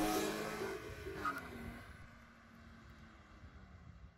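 A car engine running, fading steadily and nearly gone by about halfway through.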